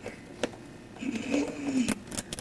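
A single soft click about half a second in, then a faint, short voiced sound a second later that bends down in pitch.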